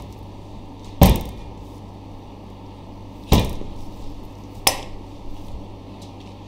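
Three sharp knocks and clatters, the first the loudest, as a large block of beef sirloin is handled on a stainless-steel tray and set down on a plastic cutting board, over a steady low hum.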